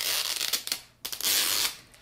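Wrapper of a Miniverse mystery ball being peeled and torn open along the capsule's seam by the fingers: two rustling tearing strokes with a brief pause between them.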